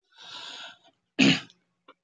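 A soft breath, then a single short, sharp cough a little over a second in.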